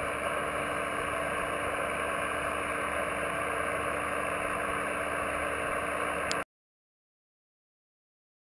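Steady hiss and static from an HF shortwave receiver on an open channel with no transmission, carrying a faint constant low tone. It cuts off abruptly about six seconds in.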